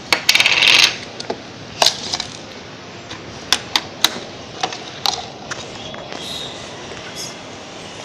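Hard plastic packaging clattering and clicking as a can-shaped toy package is opened and its parts handled: a short rattling burst at the start, then scattered sharp clicks and knocks.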